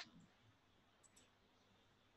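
Near silence with a faint click at the very start and two fainter ticks about a second in: computer mouse clicks advancing the presentation slide.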